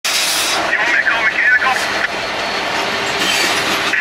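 Freight train led by a KCS AC44CW and a Norfolk Southern SD70ACU diesel rolling slowly past, a steady rumble of wheels on rail. Between about one and two seconds in, the wheels squeal in high, wavering tones.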